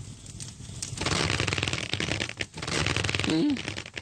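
Cartoon sound effect: a dense crackling, rattling noise that swells in about a second in and runs for a few seconds, with a brief warbling tone near the end.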